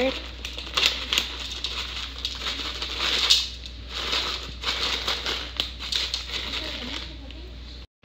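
Plastic pouch of dried cranberries and sunflower kernels crinkling as it is shaken over a salad, with many small irregular ticks as the seeds and fruit fall onto the leaves.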